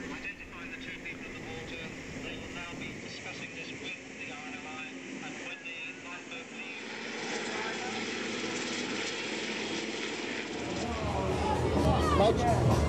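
Steady drone of an aircraft engine overhead, with faint voices mixed in. The drone grows louder in the second half.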